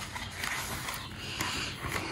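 A paperback book's page being turned by hand: paper rustling and sliding.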